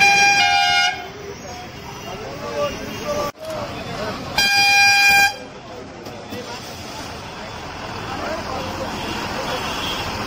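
Two blasts of a bus horn, each just under a second long: one at the start and one about four and a half seconds in. Street traffic noise and voices run underneath.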